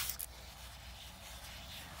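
Faint, steady trickle of a thin stream of water poured over a dug-up metal compact held in a wet work glove, rinsing the mud off it.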